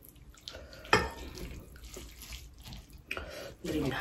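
Black lentil dal poured from a ceramic bowl over rice on a plate, with a sharp knock of crockery about a second in, then wet sounds of fingers mixing the rice and dal.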